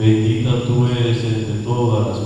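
A man's voice reciting a Spanish prayer of the rosary in a steady, chant-like monotone, holding nearly one pitch.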